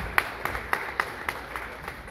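Audience applause in a hall, a few sharp hand claps standing out over the rest at about three or four a second, thinning out near the end.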